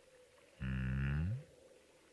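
A man's low, closed-mouth "hmm", held for under a second and rising slightly at the end, over a faint steady hum.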